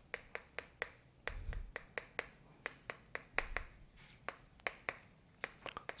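Chalk writing on a chalkboard: a string of sharp, irregular taps and short scratches as the chalk strikes the board and lifts off between strokes.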